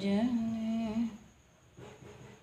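A person humming one held note lasting about a second.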